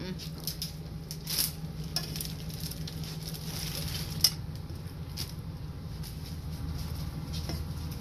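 Kitchen tongs working in a pot of soaked chiles: light clicks and knocks, the sharpest about four seconds in, over a steady low hum.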